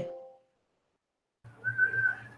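Silence, then about a second and a half in, a steady high tone over a low hum comes through a video-call participant's open microphone for about a second.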